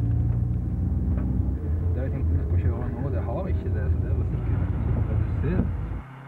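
Car driving, heard from inside the cabin: a steady low rumble of engine and road noise, with indistinct voices over it.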